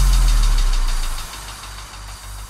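Frenchcore electronic music: a long, deep bass tone slides slightly down in pitch and fades out about a second in, leaving a quieter high hiss-like synth texture.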